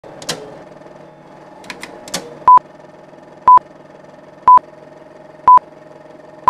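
Film-leader countdown sound effect: a short, high, steady beep exactly once a second, four times, starting about two and a half seconds in. Underneath runs a steady low hum, with a few sharp crackling clicks in the first two seconds.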